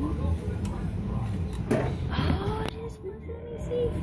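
Busy arcade background: a steady hum of machines with jingles and voices, and a brief rustle and knock about two seconds in as a plush prize is pulled out of the claw machine's prize chute.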